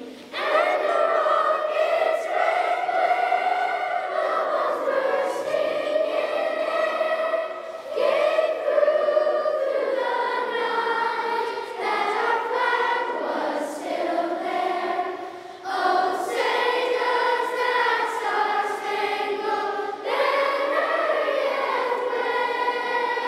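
A choir singing slow, sustained phrases, with short breaths between them.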